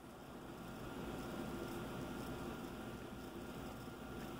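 Ballpoint pen writing on a lined paper notepad: faint, soft scratching, slightly louder in the middle, over low room hum.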